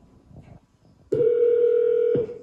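Amazon Echo Show speaker playing a steady telephone ringing tone as it places a call to the emergency helpline; the tone starts about a second in and lasts about a second.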